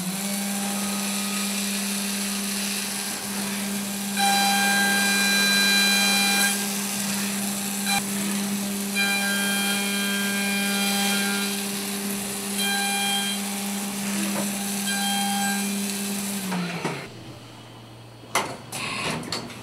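Haas Super VF-2SS CNC mill's 12,000 rpm direct-drive spindle spinning up to a steady hum, then an end mill cutting aluminum under flood coolant. From about four seconds in, the cut gives a loud, high multi-tone whine in several passes with short breaks. Near the end the spindle winds down and stops.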